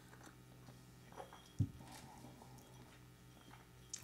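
Faint mouth noises of a person sipping and tasting coffee from a small cup, with a short low thump about one and a half seconds in.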